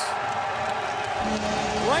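Ice hockey arena sound right after a goal: a steady crowd noise, joined a little over a second in by a low rumble and a steady low tone.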